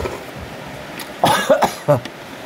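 A man coughing three or four times in a quick burst just past the middle, catching his breath after a sip of spicy noodle broth.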